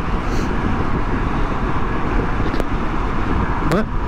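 Wind rushing and buffeting over the microphone of a motorcycle riding at highway speed in strong, gusty wind, with road noise underneath; a steady, dense rush with no distinct engine note.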